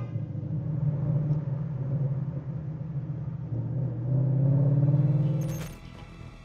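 Car engine running under acceleration, a low steady rumble that rises in pitch and grows louder in the second half, then cuts off suddenly near the end.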